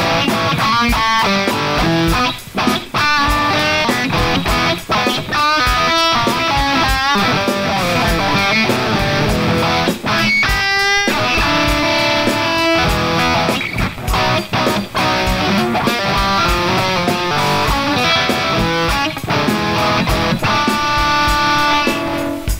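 Yamaha electric guitar played in a blues-rock style: melodic lead lines with bent notes and quick runs, and a fast rising run about ten seconds in.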